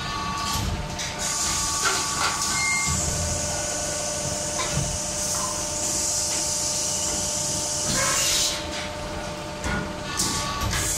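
Automatic hydraulic stretching press line running: a steady machine hum, a long hiss from about a second in until near the end, and a few metal clunks.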